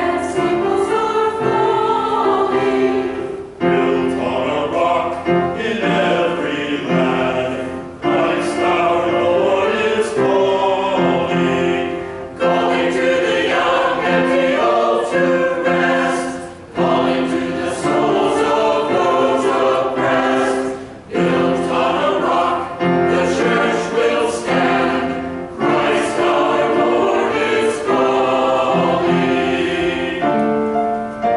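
Small mixed choir of women's and men's voices singing together in sustained phrases of about four seconds each, with brief breaks between phrases.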